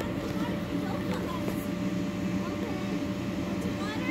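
Steady low mechanical hum that holds level throughout, with faint voices and a few short chirps in the background.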